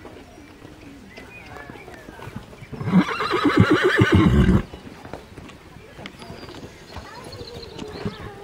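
A horse whinnying once, loudly, about three seconds in: a single quavering call lasting nearly two seconds.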